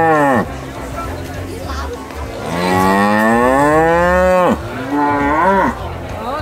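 Cattle mooing: one call ends about half a second in, then a long moo rises and falls over about two seconds, followed by a shorter moo near the end.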